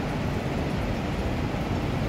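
Steady city street traffic noise, a constant low rumble of passing cars and buses with no single vehicle standing out.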